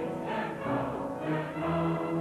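Operetta music: a mixed chorus of men and women singing with orchestral accompaniment.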